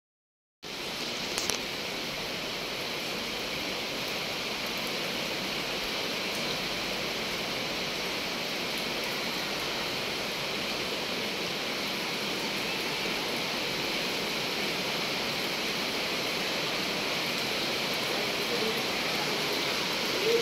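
Heavy rain falling steadily: a dense, even hiss that starts abruptly just under a second in and holds without a break.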